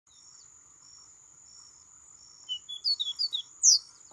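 A caboclinho (Sporophila seedeater) singing a short phrase of quick whistled notes, starting about two and a half seconds in and ending in a louder upward-sweeping note, over a steady high-pitched buzz.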